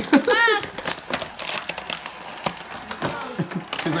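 Plastic toy blister packaging crinkling and clicking irregularly as it is handled, with a laugh at the very start.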